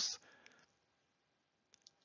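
Near silence in a pause between words, broken by a faint tick about half a second in and two faint, short clicks near the end.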